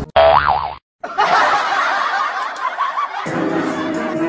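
Cartoon 'boing' sound effect, under a second long, its pitch wobbling up and down. After a brief cut to silence comes a dense, noisy stretch, then music with steady sustained notes near the end.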